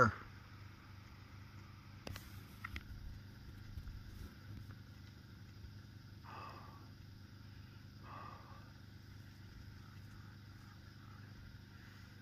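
Quiet outdoor background: a faint steady low rumble, with a few soft clicks about two seconds in and two brief faint sounds about two seconds apart later on.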